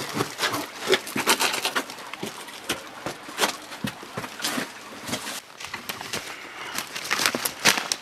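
Clothing, hands and boots scraping and scuffing against sandstone as a person crawls and squeezes through a narrow rock crevice: a run of irregular short scrapes and knocks.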